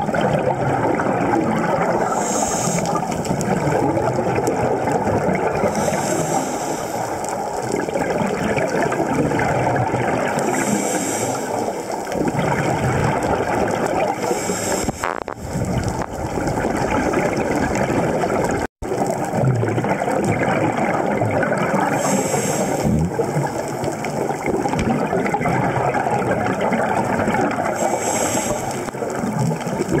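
Underwater scuba sound: exhaust bubbles gurgling and rushing steadily, with a higher hiss of regulator breathing every four to six seconds. The sound drops out for an instant about two-thirds of the way through.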